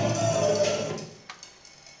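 Live improvised electroacoustic music from a duo, with laptop electronics, turntable and percussion in dense layers. It drops away sharply about a second in, then a single sharp click and faint scattered small sounds follow.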